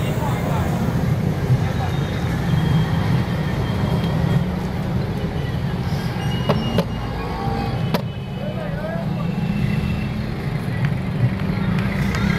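Roadside street noise: a steady low rumble of traffic with people talking in the background, and a few sharp clicks or knocks a little past the middle.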